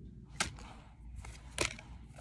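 Two short, sharp snaps of Pokémon trading cards being flicked as one card is moved to the back of the stack, about a second apart.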